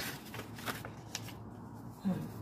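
Pages of a softcover cookbook being handled and turned: several short, crisp paper rustles.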